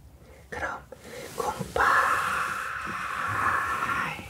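Whispered speech into a close microphone: a few short whispered words, then a steady hiss lasting about two seconds.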